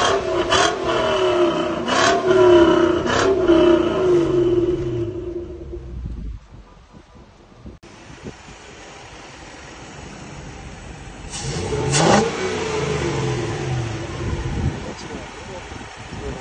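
Toyota 3UZ-FE 4.3-litre V8 in a Ford Mustang revved in repeated blips for the first five seconds, then dropping to a quieter idle. About twelve seconds in comes one more rev that falls back again.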